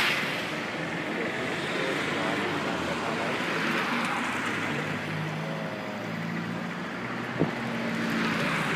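Street traffic noise: a steady road hum, with a car passing close by around the middle and a single sharp click near the end.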